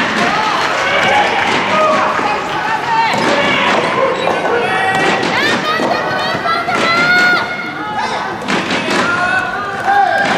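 Soft tennis rally: several sharp hits of rackets on the soft rubber ball, under loud shouting and calling from players and team supporters in a large gymnasium.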